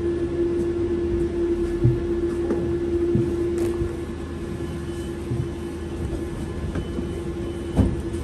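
Steady electrical hum inside a Solaris Trollino 18 trolleybus standing at a stop, one constant tone over a low rumble, with a few brief knocks. The hum eases a little about halfway through.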